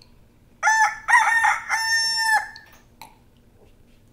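A rooster crowing once: a single cock-a-doodle-doo of about two seconds, its last note held long and steady.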